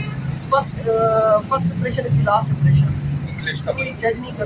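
Men's conversation, with a steady low rumble of passing road traffic underneath.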